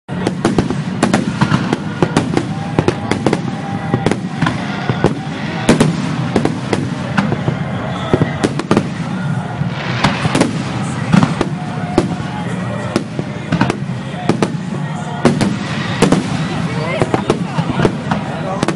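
Aerial firework shells bursting in quick succession, many sharp bangs and crackles overlapping over a steady low rumble.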